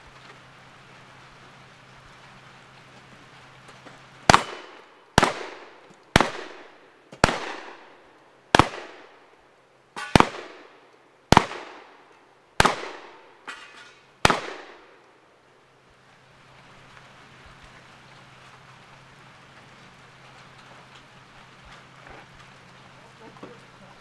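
Nine loud gunshots from a shouldered long gun, fired roughly one a second starting about four seconds in, each with a short echoing tail. Two fainter reports fall among them.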